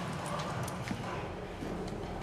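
Soldiers moving in a concrete bunker: scattered faint knocks of footsteps and shuffling over a steady low rumble.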